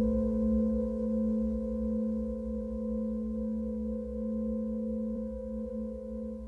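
Ambient music: a held drone of a few steady tones, low and middle pitched, over a faint low rumble.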